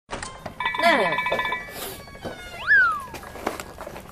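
Brief women's speech in Korean with edited-in variety-show sound effects: a bright, held chime-like tone under the voice about half a second in, then a short whistle that shoots up and slides back down past the halfway point.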